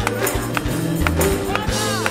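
Live church praise band with singers: drum kit keeping a steady beat under bass guitar, organ and keyboard, with a voice gliding through a sung line near the end.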